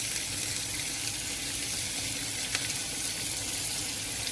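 Oil and butter sizzling steadily in a frying pan, with cumin, whole spices, garlic, ginger and freshly added chopped onions frying in it.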